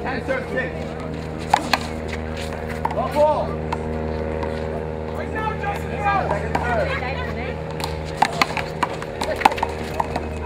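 Sharp slaps of a rubber handball struck by an open hand and hitting the wall and court during a rally: a few hits, one pair close together about a second and a half in and more near the end. Indistinct voices and a steady low hum run underneath.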